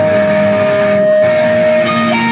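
Loud amplified electric guitars playing the opening of a pop-punk song live, with one high note held steady over chords that change about a second in. No drums are playing yet.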